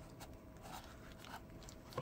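A few faint scrapes and taps of fingers working a plastic charging case out of its snug cardboard box insert.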